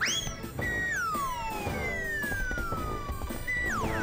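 Cartoon whistle sound effects over background music: a quick rising whistle at the start, then a long, smooth falling whistle glide and a second, shorter falling glide near the end, the comic sound of the flying hat sailing through the air and dropping.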